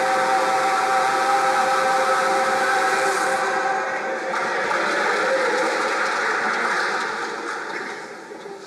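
Church choir holding a final sustained chord, which ends about four seconds in. Audience applause follows and fades out.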